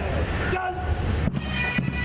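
A long drawn-out shouted call trails off at the start. About a second and a half in, a military pipe band strikes up, bagpipes over steady drum beats.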